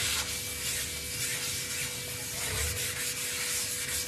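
Folded tissue paper rubbed back and forth over the surface of a cast iron dosa tawa, a continuous scratchy rubbing, as a thin coat of oil is wiped on to season it.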